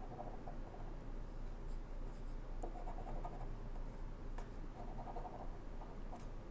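A coin scratching the silver coating off a paper lottery scratch-off ticket, in a few short bursts of scratching with pauses between them.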